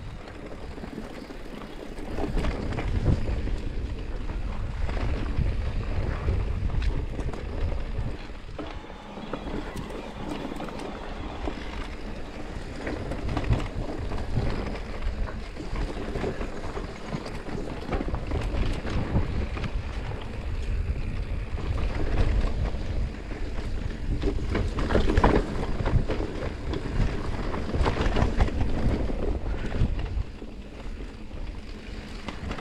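Electric mountain bike riding down a rocky dirt singletrack, heard from a body-mounted camera: wind rumbling on the microphone, tyres on dirt and stones, and the bike knocking and rattling over the bumps. Louder from about two seconds in, easing off for a few seconds in the middle.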